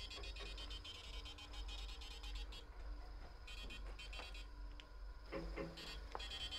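Faint high-pitched trilling of crickets that stops and starts in bursts, over a steady low hum.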